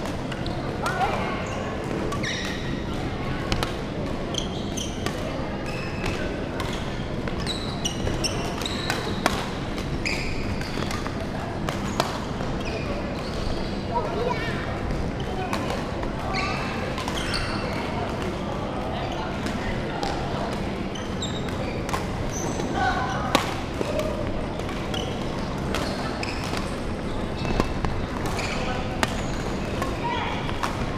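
Badminton play on a wooden court floor: repeated sharp racket strikes on the shuttlecock and short high shoe squeaks, scattered irregularly, over distant voices that carry through the large hall.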